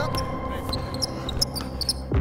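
Basketball dribbled on a hardwood gym floor in a run of quick bounces. Short high sneaker squeaks come near the end, over a low steady music bed.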